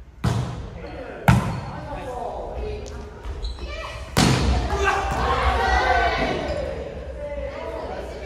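A volleyball being struck during a rally in a reverberant gym: a sharp hit just after the start, a louder one at just over a second, and another about four seconds in as the ball is spiked at the net. Players shout and call out, mostly after the spike.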